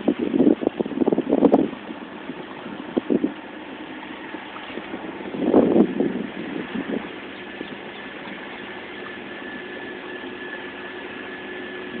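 Wind buffeting the phone's microphone in rough gusts, once at the start and again about halfway. Between and after the gusts, a steady hum with a thin high tone holds through the second half.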